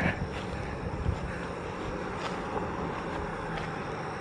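Road traffic: a steady low hum of a vehicle engine.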